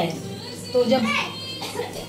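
Speech: a woman says a short word, with children's voices in the background.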